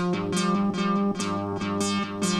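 Melody on a Roland SH-101 analog monosynth: a sequenced line of short, repeating synth notes, about four a second, each starting bright and quickly dulling, fed through delay from a Lexicon PCM 80.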